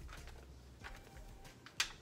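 Faint rustling of hands smoothing paper and fabric over a garment on a heat press, with one short crisp rustle near the end, over a steady low hum.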